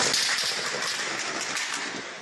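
Loud, steady rushing noise on a mobile-phone recording, with faint scattered clicks, picked up by the phone's microphone while the phone is being moved about.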